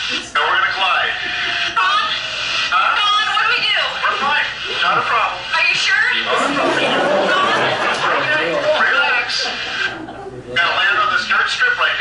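Indistinct voices talking, with a brief lull about ten seconds in.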